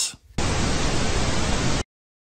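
Television static sound effect: an even hiss of white noise that starts about half a second in and cuts off suddenly just before the end.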